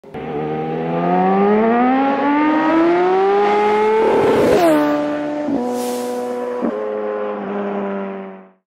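An engine accelerating, its pitch rising steadily for about four seconds. A whoosh follows, after which the engine drops to a lower, steady note broken briefly twice.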